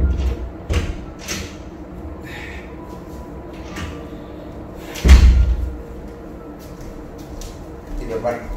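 Room door sounds: knocks near the start and a heavy low thud about five seconds in, as of a door opening and banging shut.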